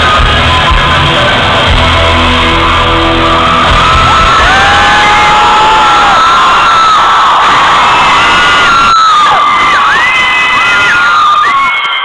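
Loud live concert music with a heavy bass for the first few seconds, then a crowd of fans screaming and cheering, with many high-pitched whoops.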